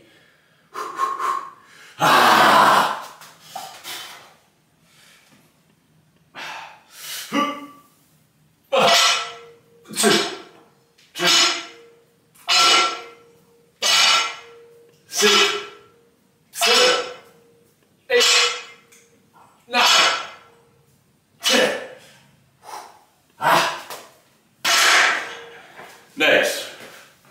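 A man breathing out hard with each rep of barbell bent-over rows: about a dozen forceful breaths a little over a second apart, after one loud breath about two seconds in.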